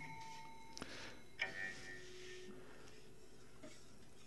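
The coil spring of a spring-loaded lever on a 1950s reel-to-reel tape deck, worked by hand. It gives light metallic clicks, each followed by a short springy ringing: one right at the start, one just before a second in and a third at about a second and a half. Between them there is faint room tone.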